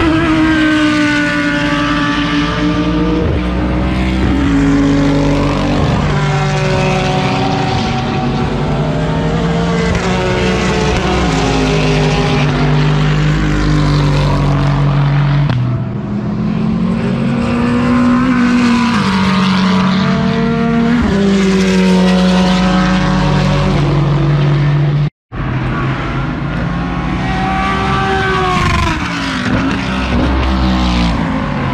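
GT3 race cars passing one after another at racing speed, their engine notes rising and falling as they rev through the gears and brake. The sound cuts out to a brief silence for a moment near the end.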